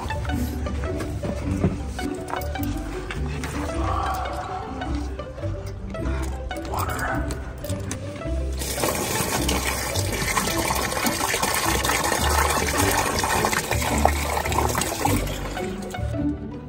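Background music with a steady low beat throughout. Slightly past halfway through, water starts rushing from a plastic jug into a Scrubba wash bag, filling it for a wash, and it stops shortly before the end.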